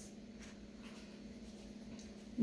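A page of a picture book being turned: a faint paper rustle over a steady low hum.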